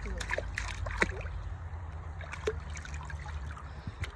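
Shallow water in a plastic kiddie pool splashing and trickling as a baby is moved through it, with a cluster of small splashes in the first second or so and lighter dripping after.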